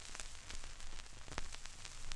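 Surface noise of an original 1964 vinyl 45 with the stylus in the lead-in groove: a steady faint hiss with scattered crackles and pops over a low rumble.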